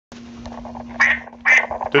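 Two loud duck quacks, one about a second in and a second half a second later, over a faint steady low hum.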